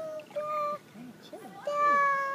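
A toddler singing in a high-pitched voice: two short held notes, then a longer held note near the end.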